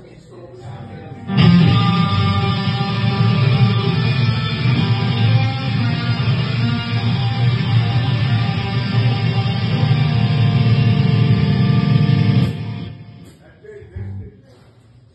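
Rock band's electric guitars, played live through amplifiers, ringing out one long held chord: it starts suddenly about a second in, stays steady for about eleven seconds and fades near the end.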